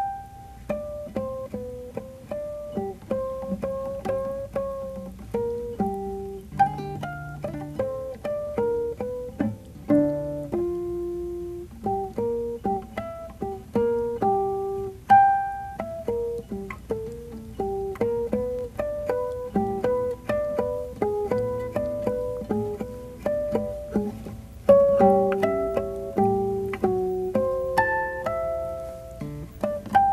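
Solo classical guitar playing a slow melody of single plucked notes in artificial harmonics, each note touched at the octave by the index finger and plucked behind it, with some lower notes underneath.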